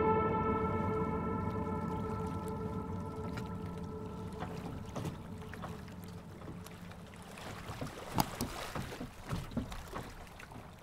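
Music fading out over the first few seconds, leaving the low steady rumble of a motor boat underway, with several sharp knocks in the last few seconds.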